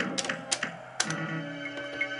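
Sammy Hokuto no Ken pachislot machine playing its background music, with three sharp clicks from the stop buttons at about a fifth of a second, half a second and one second in, as the three spinning reels are stopped one by one.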